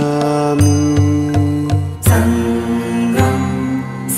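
Buddhist devotional outro music: a chanted mantra over long held notes, with a low bass note pulsing four times in the first half and a change of notes about two seconds in.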